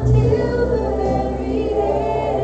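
A worship song with a group of voices singing long held notes over a steady instrumental backing.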